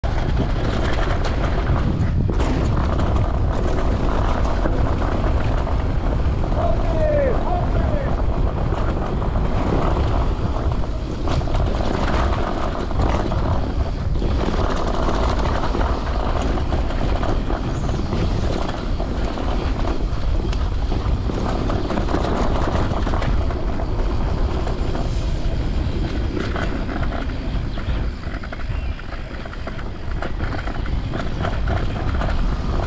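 Mountain bike descending a dirt forest trail: a steady rumble of wind on the microphone over tyre noise on dirt and roots, with frequent clicks and rattles from the bike over bumps.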